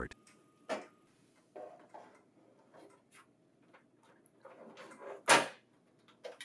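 Paper transport unit of a laser printer's finisher being slid into place by hand: quiet scrapes and clicks of plastic and metal against the printer body, with a louder knock about five seconds in as it goes home.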